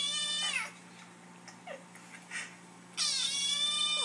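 Kitten meowing in a YouTube video, played through a laptop's speakers: one high-pitched meow that falls away at the start, and another about three seconds in.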